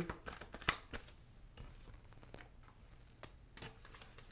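Tarot cards shuffled by hand: light papery card clicks and taps, the sharpest just under a second in, thinning to a few soft ticks as a card is drawn and laid on the table.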